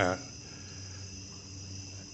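Crickets trilling steadily and high-pitched in the background, over a low steady hum.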